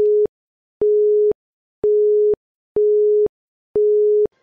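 Countdown-timer sound effect on a quiz: an electronic beep of one plain steady tone, about half a second long, repeating once a second, five beeps in all.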